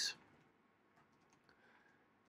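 Near silence: faint room tone of a voice-over recording just after the narrator's last word, with a few faint clicks.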